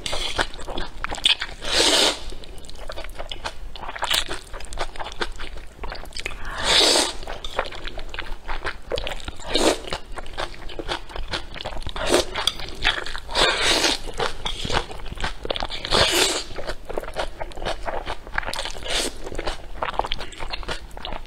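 A person slurping spicy instant noodles, with about eight loud slurps spread through, and wet chewing and crunching clicks in between.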